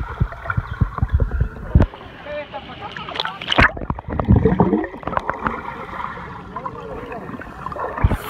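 Underwater sound picked up by a submerged phone in a swimming pool: gurgling bubbles and water sloshing and knocking against the phone, muffled, with louder bursts about three and a half to four and a half seconds in.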